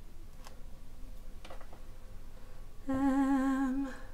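A woman hums one steady, slightly wavering note for about a second near the end, after a few faint light clicks.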